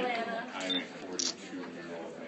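Several people talking at once in indistinct, overlapping voices, with a short high-pitched hiss about a second in.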